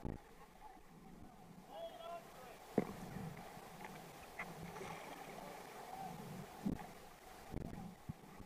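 River rapids rushing and splashing around a whitewater kayak as it is paddled, with a few sharp knocks from the paddle, the loudest about three seconds in.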